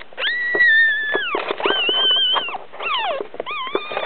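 Young papillon puppies crying: high-pitched squealing cries, one long cry of about a second at the start, then several shorter cries that rise and fall in pitch and overlap.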